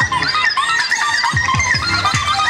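Live band music: a keyboard melody with a kick-drum beat, the drum landing twice near the end.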